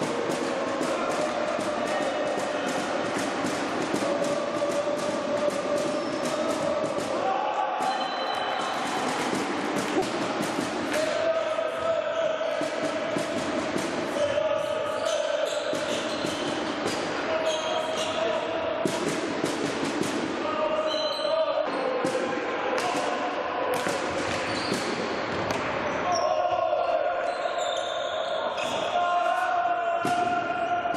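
Indoor hockey being played in a reverberant sports hall: a quick, irregular run of sharp clacks from sticks striking the ball and the ball hitting the wooden side boards, with players' shouts and calls over it.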